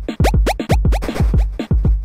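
Electronic chiptune-style music made on a web-based emulation of the Commodore 64 SID sound chip. It is a fast beat of falling-pitch synth kick drums and noisy snare hits, with a run of quick rising pitch sweeps in the first second.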